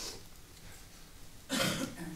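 A single short cough, close to the microphone, about one and a half seconds in.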